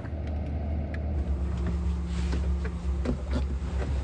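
Rear-mounted diesel engine of a double-decker coach idling with a steady low rumble and hum, heard from the coach's stairwell with the door open.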